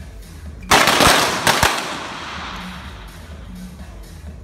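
Sport pistol shots from the firing line: a quick string of about three sharp cracks within a second, ringing on briefly in the indoor range hall.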